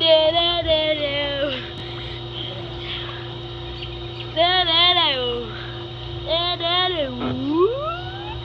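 A girl singing wordless "do-do-do" notes in a few short phrases, the last note swooping down and back up, over a steady low hum.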